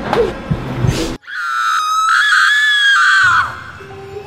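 A woman's shrill, high-pitched scream that cuts in abruptly about a second in, is held for about two seconds and fades out, with scuffling and music before it.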